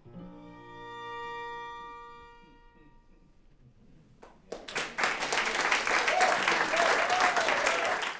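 String quartet (two violins, viola and cello) holding a final bowed chord that swells and then fades away over about three seconds. After a short pause, the audience bursts into loud applause.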